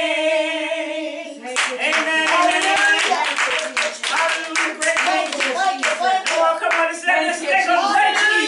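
A voice holds one long sung note with vibrato, then about a second and a half in, worship singing starts with hand clapping going along with it.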